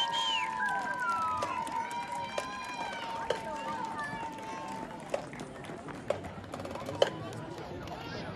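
Spectators talking in a stadium crowd, under a steady tone that fades out about five seconds in. Sharp clicks come about once a second from about two seconds in.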